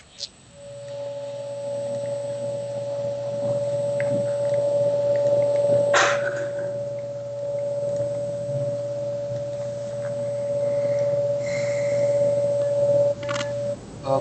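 A steady, unwavering tone with a low hum beneath it. It swells in over the first second, holds for about twelve seconds and stops near the end, with a sharp click about six seconds in.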